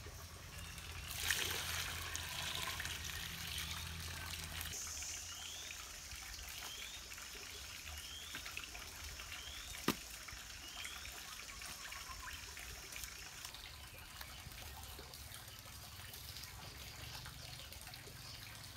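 Water poured from a clay pot onto a heap of soil, starting about a second in, followed by wet squelching as hands knead it into mud.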